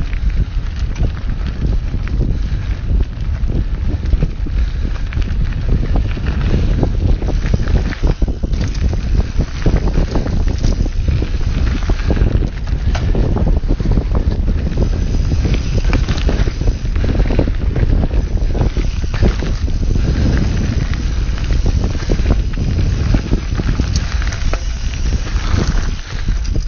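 Wind buffeting the microphone of a camera carried on a mountain bike descending a dirt forest trail, with steady tyre rumble and many short rattles and knocks from the bike going over bumps.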